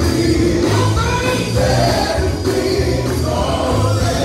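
Live gospel band: men singing together over electric guitars, bass guitar and drums.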